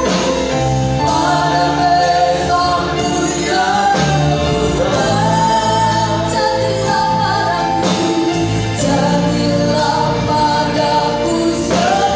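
A live worship band plays a slow gospel song: a lead vocalist sings long held notes in Indonesian over keyboard, bass guitar, electric guitar and drums.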